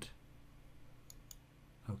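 Two faint computer mouse clicks about a second in, close together, over low room hiss.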